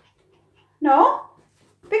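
Small dog giving one short whine that rises sharply in pitch.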